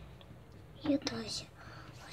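Speech only: a short spoken word about a second in, then whispering, over a faint low hum.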